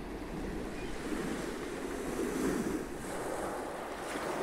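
Ocean surf: a wave rushes in and swells to a peak a little past halfway, then the next one begins to build near the end.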